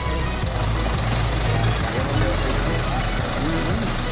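Engine of a lifted off-road SUV running at idle, a steady low rumble, with people's voices in the background from about halfway through.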